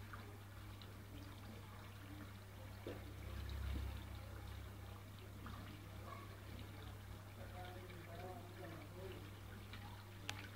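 Faint pond ambience: water trickling under a steady low hum, with distant voices near the end.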